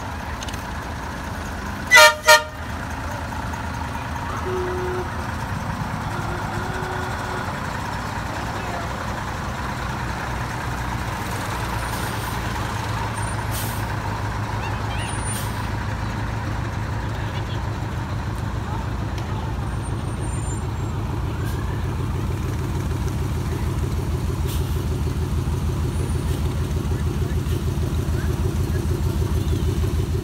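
Military 6x6 cargo truck's horn honks twice in quick succession about two seconds in, over the steady low rumble of passing vehicle engines that grows louder toward the end.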